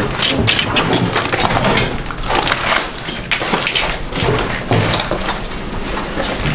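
Footsteps and bodies pushing through dry vines, stems and debris: a rapid, irregular series of cracks, snaps and scrapes.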